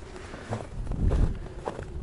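A person's footsteps walking, with a few soft low thuds and rustling.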